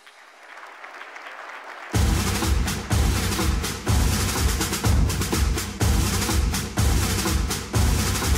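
Drum part of a stage number: after a quiet rising swell, heavy bass drum beats about once a second with snare strokes between them start suddenly about two seconds in.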